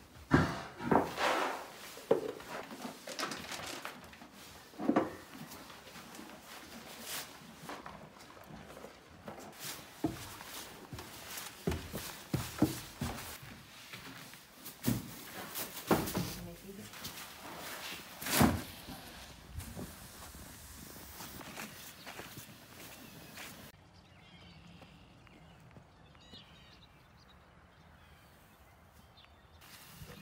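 Irregular knocks, thumps and footsteps of barn chores in a horse stall, with several sharp, loud knocks in the first twenty seconds, then a quieter stretch near the end.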